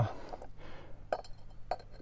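A few light metallic clinks as a steel U-bolt and mounting bracket for a bicycle engine kit are handled and picked up off a wooden board.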